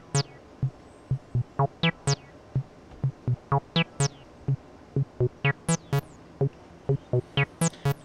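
Abstrakt Instruments Avalon Bassline, an analog TB-303 clone synthesizer, playing a sequenced acid bassline of short staccato bass notes, about three or four a second. Many notes carry a resonant filter sweep that falls quickly in pitch, driven by the synth's second modulation envelope sent to the filter.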